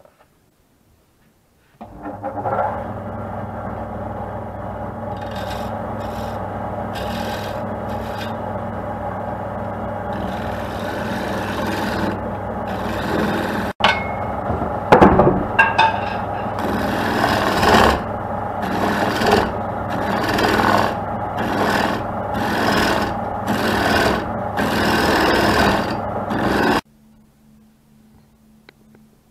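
Wood lathe starting up and running with a steady hum while sandpaper is held against a spinning maple plate blank. The sanding strokes come repeatedly and grow louder and denser in the second half, and the sound cuts off suddenly near the end.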